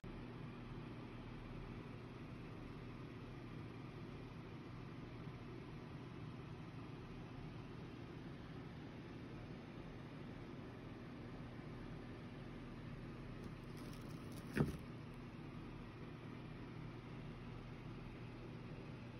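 Faint steady low hum with a light hiss behind it: room tone. One brief knock about three-quarters of the way through.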